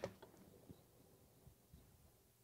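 Near silence: faint room tone with a few small, faint ticks.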